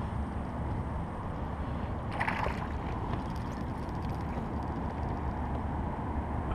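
Wind rumbling on an action-camera microphone over water lapping against a plastic fishing kayak's hull. A brief sharper sound comes about two seconds in.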